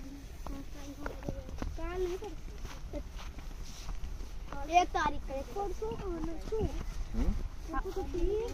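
Indistinct voices of people talking while walking, with faint footsteps on a dirt path.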